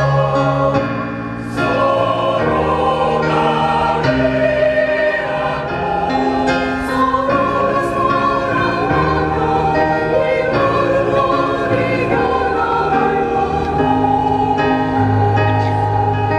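Mixed choir of men's and women's voices singing in parts, holding chords that change every second or two.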